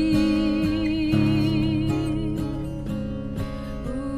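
Song accompaniment of strummed acoustic guitar under a long held note with vibrato, which fades about two seconds in, leaving the guitar.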